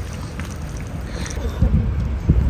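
Wind rumbling on the microphone outdoors, a low, even noise that grows stronger and gustier about one and a half seconds in.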